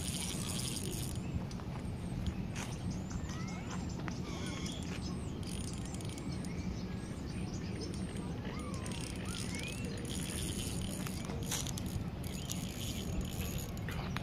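Small birds chirping on and off over a steady low outdoor rumble, with a few faint clicks.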